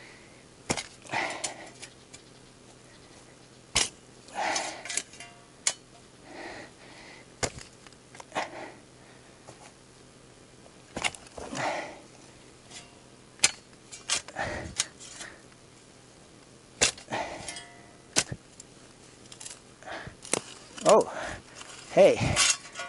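A steel shovel blade being driven down repeatedly into a thick tree root and the soil around it, cutting through the root by hand. It makes irregular sharp chops, each with a short crunch or scrape, every second or two.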